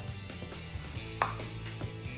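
Wooden pestle pounding cooked cassava in a wooden mortar: several irregular dull strikes, the loudest a little after a second in.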